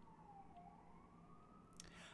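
Faint siren in the background, one slow wail that falls in pitch and then rises again, over near silence.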